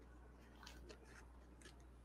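Near silence, with a few faint clicks and rustles, around the middle and again near the end, as hands press a glued straw onto the base of a box.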